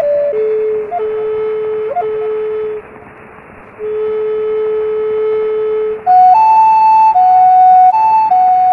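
Native American style flute, a walnut plains-style flute in A minor, playing a slow courting melody: long held low notes with a brief break in the middle, then climbing to higher notes about six seconds in. A steady hiss runs underneath from an added gramophone effect that imitates an old recording.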